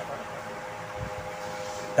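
A pause in speech filled by a steady background hum, with two faint steady tones held through it.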